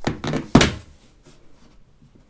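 Two iPhones set down on a wooden desk: a thunk at the start, then a louder thunk about half a second later, followed by a few faint handling clicks.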